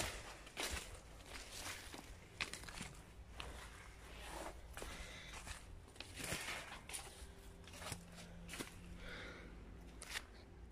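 Footsteps on ivy and leaf litter, faint and irregular, with rustling as the walker moves through undergrowth.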